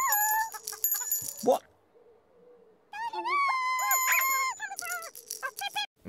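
High-pitched, squeaky character voices with sliding pitch, topped by thin, bright ringing tones. They come in two bursts split by a second or so of near silence, and the second burst holds one long steady note.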